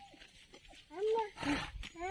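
Mostly quiet at first. About a second in comes a short, high-pitched vocal call that rises and falls, followed at about a second and a half by a brief breathy rush of noise.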